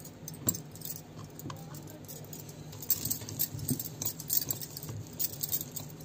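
Scattered light taps, clicks and small jingles of a wooden rolling pin being worked over soft dough on a ridged wooden board, over a steady low hum.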